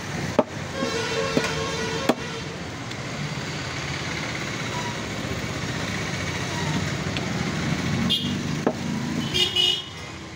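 Meat cleaver chopping a goat's head on a wooden stump block: a few sharp single chops, one near the start, one about two seconds in and two close together about eight seconds in, over steady outdoor street noise.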